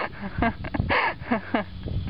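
A person laughing in quick repeated bursts: a string of short, falling-pitch 'ha' sounds with breathy gasps between them.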